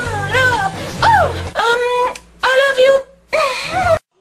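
A woman wailing out a song in long, gliding notes over backing music. The music drops out about a third of the way in, leaving her voice alone in short phrases broken by brief gaps.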